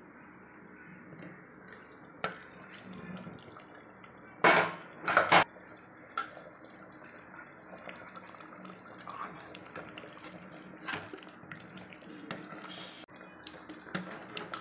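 Aluminium pressure cooker being opened, over a steady low hiss: two short loud bursts of noise about four and a half and five seconds in as the lid is worked free, with light metal clicks. Then a ladle is stirred through the thick mutton curry inside.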